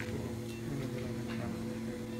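A steady low drone made of several held tones that do not change, with a few faint small clicks.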